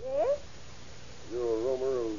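A cat meowing twice in an old radio drama recording: a short meow that rises and falls at the start, then a longer, wavering one just past halfway.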